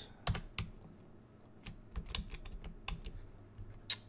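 Typing on a computer keyboard: a dozen or more uneven keystrokes as a line of code is corrected.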